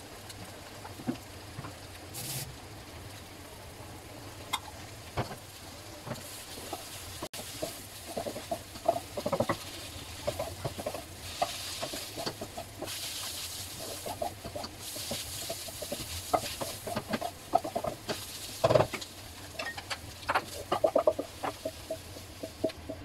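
Onions and egg stir-frying in a nonstick wok: a sizzle, with a wooden spatula scraping and tapping against the pan in quick clusters that get busier in the second half. There is one sharp knock a few seconds before the end.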